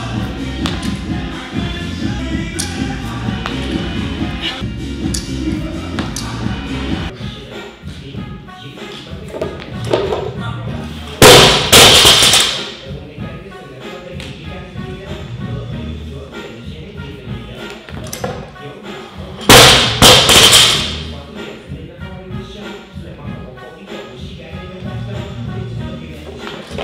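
Background music with a beat for the first several seconds, then a loaded barbell dropped onto the platform twice, about eight seconds apart. Each drop is a loud bang followed by a couple of quick bounces of the plates.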